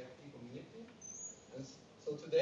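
Faint, distant speech in a lecture hall, broken by pauses, with a brief high-pitched squeak about a second in.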